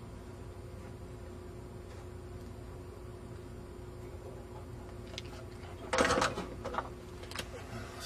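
Faint steady hum from the room or recording. About six seconds in comes a short, loud rustle and clatter of handling, followed by a couple of small clicks.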